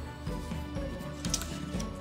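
Quiet background music with held notes, and a faint brief rustle of paper being handled about a second and a half in.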